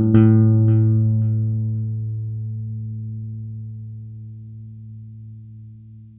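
The closing chord of a rock song on electric guitar and bass, struck once just after the start and left to ring out, fading slowly over several seconds. A few quick, fading repeats follow the hit in the first second or so.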